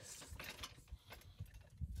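Faint knocks and clicks of a bottle jack being handled and set in place on a wooden block under a pickup's rear axle.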